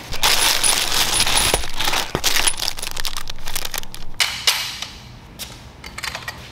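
Plastic packaging crinkling loudly as it is pulled out of a cardboard box, followed by scattered clicks and light metallic clinks of photography backdrop stand parts being handled.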